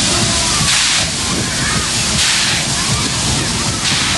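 Spinning fairground ride in motion: a steady rushing noise with a louder whoosh swelling about every second and a half as its cars sweep round, over a background of voices.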